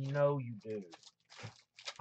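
A man's voice briefly at the start, then crinkling and rustling of jumbo trading-card pack wrappers being picked up and handled.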